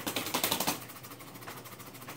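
A quick run of small rattling clicks lasting under a second, then faint handling noise, from working the tin of mint dip.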